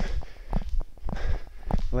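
Sneakers landing on a turf-covered floor during quick, rope-less jump-rope hops in place, a quick regular run of soft thuds about four a second.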